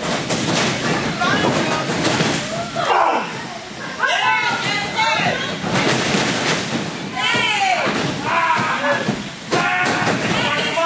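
Spectators shouting and yelling, with thuds and slams of wrestlers' bodies hitting the ring canvas.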